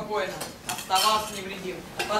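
Spoons clinking and scraping against metal bowls and a mess tin, with a few sharp clinks, the loudest about a second in.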